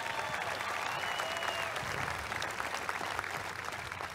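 Audience applauding steadily in a pause after a line of a speech, with a few faint voices calling out in the first couple of seconds.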